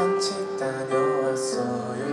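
Live pop ballad: a Yamaha Montage 7 keyboard playing sustained chords while a man sings, with soft 's' sounds twice in the line.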